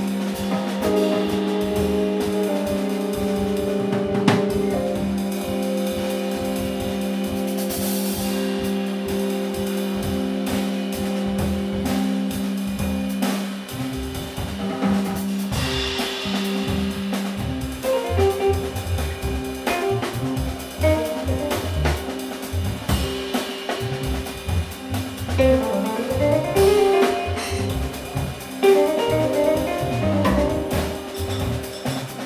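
Live instrumental nu-jazz by a drum kit, electric bass and Nord keyboard trio: steady drumming with cymbals over held low notes for about the first half, turning to a busier, choppier low line after that.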